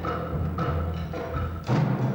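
Live percussion music: drums and timpani playing low, sustained notes with repeated strokes, and a heavier hit near the end.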